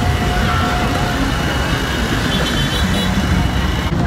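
Busy festival-street noise: motorbike engines running among the chatter of a dense crowd, with a short steady tone in the first second. The sound changes abruptly just before the end.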